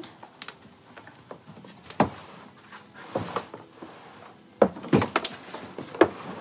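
Black plastic compost bin rolled by hand across concrete to mix the compost inside, giving irregular knocks and thuds, with several close together near the end.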